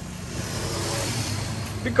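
Motor traffic noise: a low engine hum with a hiss that swells about half a second in and eases off near the end, as a vehicle passes.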